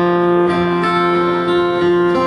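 Acoustic guitar strumming a held chord in an instrumental passage of a live song, its tones ringing on steadily.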